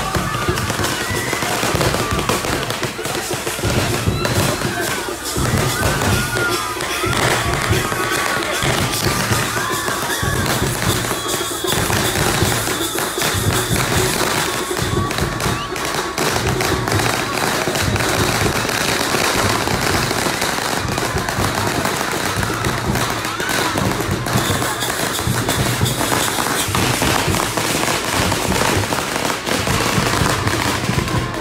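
A long string of firecrackers crackling in rapid, continuous bursts.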